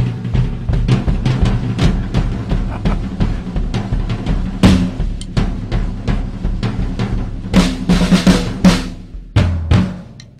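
Acoustic drum kit played in a fast, busy pattern of snare and bass drum strokes, with loud cymbal crashes about halfway through and again near the end, stopping just before the end.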